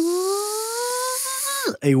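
A person's voice imitating a rotary gun's whirr as it spins up: one long buzzing hum rising slowly in pitch, with a hiss over it, cutting off sharply near the end.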